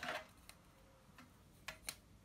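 Faint taps and ticks of a ruler and power-supply cable being moved along a desk during measuring: a brief scrape at the start, a light tick, then two sharp clicks close together near the end.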